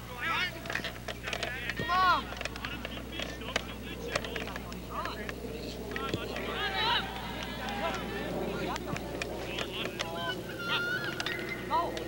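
Spectators at a soccer game shouting and cheering, several voices yelling over one another as an attack builds, loudest about two seconds in.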